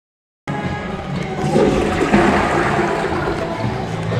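A toilet flushing: a loud rush of water that starts about half a second in and swells before easing off.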